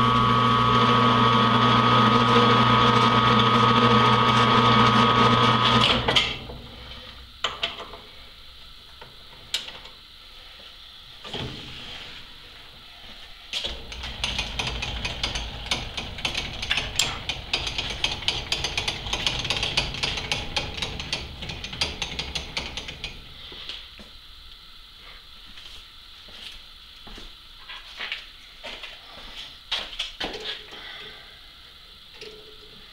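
Metal lathe running at low spindle speed with a steady gear-and-motor hum while a tap is started into a freshly drilled hole; the hum cuts off suddenly about six seconds in as the lathe is stopped. After that come scattered light metal clicks and handling noises.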